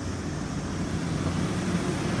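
Steady road traffic noise: a low vehicle engine hum under a constant hiss, growing slightly louder toward the end.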